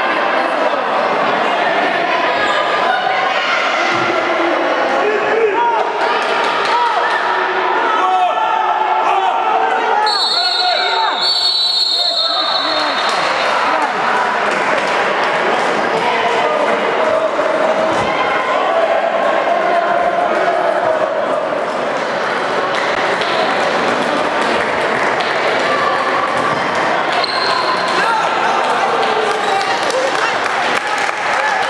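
Echoing shouts and voices of players and spectators in a sports hall during a handball match, with a ball bouncing on the wooden court. Two short high whistle blasts, typical of a referee's whistle, come a little after ten seconds in.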